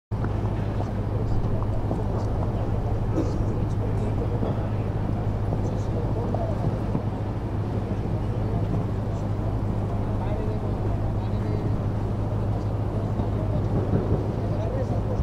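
A steady low hum with faint, indistinct voices in the background.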